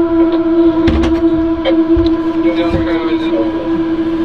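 A steady, even-pitched machine hum, with background voices and a few low knocks.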